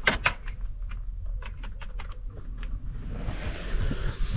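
Light knocks and clicks, two sharper ones right at the start, over a low steady rumble.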